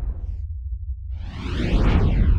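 Trailer whoosh sound effects over a steady deep low rumble. One whoosh fades out in the first half second. A second swells up from about halfway, with a sweeping, phasing sound, and peaks at the end as the title card blurs away.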